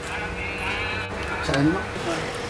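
People talking, with a high, wavering voice-like sound in the first second.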